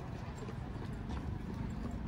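Running footsteps on a stadium track, a steady rhythm of light footfalls about three a second, over a low rumble on the microphone from the running camera.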